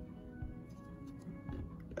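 Quiet background music with steady held notes, and a few faint clicks as a stack of chrome trading cards is handled.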